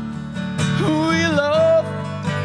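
Acoustic guitar strummed in a slow song, with a man's voice holding one wavering note from about a second in until near the end.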